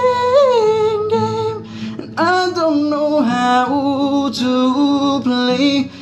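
A man singing in a high voice with acoustic guitar underneath: one long held note that bends up, a short break just before two seconds in, then more sung phrases that slide between pitches.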